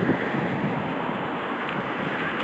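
Steady, even rushing noise of outdoor street ambience with traffic, picked up on a handheld phone microphone.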